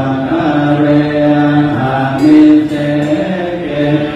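Group of Theravada Buddhist monks chanting together in low male voices, holding long notes that step between a few pitches.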